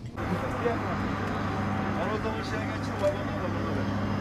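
Steady low hum of a parked passenger train at a station, over a background hiss, with faint distant voices.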